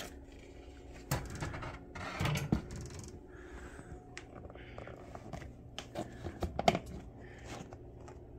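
Clear plastic egg-laying tub slid out of a glass enclosure and handled: scattered clicks and knocks of plastic, with the sharpest cluster a little before the end, over a faint steady hum.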